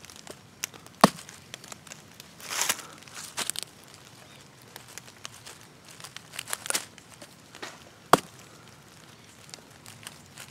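A Spyderco Tenacious folding knife stabbed point-first into a weathered wooden board: two sharp knocks of the blade biting into the wood, about a second in and again near the end. Crackly rustling and scraping come in between.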